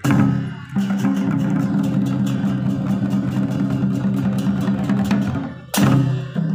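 Live Nepali folk band of hand drums and cymbals playing a steady rhythm over a held low note. The sound dips briefly near the start and again shortly before the end.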